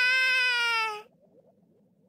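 A cartoon kitten's voice gives one long, drawn-out mew of contentment at being full. It dips slightly in pitch and stops about a second in, leaving only faint background.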